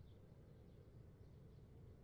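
Near silence: faint outdoor ambience with a low steady background rumble and a few faint, high bird chirps near the start.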